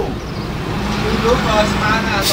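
A steady low motor rumble, like road traffic, runs under a voice that speaks briefly in the second half.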